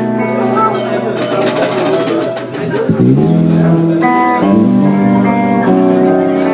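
Live blues band playing, with electric guitar and bass: long held notes, and the bass line stepping to new notes a few times.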